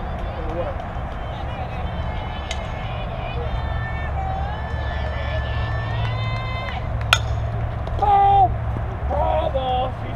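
Single sharp crack of a fastpitch softball bat striking the ball about seven seconds in. A loud shout follows, with spectators' voices around it.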